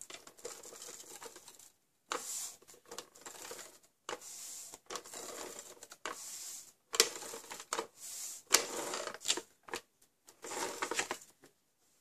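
Scotch Advanced Tape Glider (ATG tape gun) laying double-sided adhesive onto cardstock: its mechanism rattles and whirs in several strokes of a second or two each, with sharp clicks between strokes as it is lifted and repositioned.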